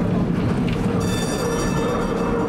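A 1947 PCC streetcar running along street track, with a steady low rumble from its motors and wheels on the rails. About a second in, a high ringing squeal joins it and holds.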